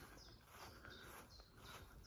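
Near silence, with faint high bird chirps recurring every so often.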